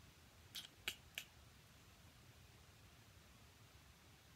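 Three short, light clicks as a die-cut cardstock frame is laid onto glued card and pressed down with the fingers, about half a second to just over a second in; otherwise near silence.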